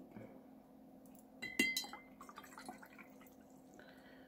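A paintbrush being rinsed in a glass water jar: one sharp clink of the brush against the glass with a brief ring about a second and a half in, then a few lighter taps and small water sounds.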